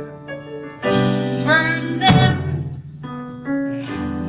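A piano-led live band with bass and drums playing a show tune, with strong chords struck about one and two seconds in. A woman's voice holds a note with vibrato in the middle.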